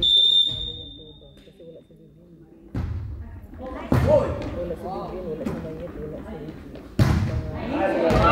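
Indoor volleyball rally: a referee's whistle blows briefly at the start, then the ball is struck with sharp slaps three times, about three seconds in, at four seconds and at seven seconds, echoing in a large hall. Players' voices call between the hits.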